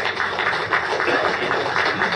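Audience applauding: a dense, steady run of many hand claps.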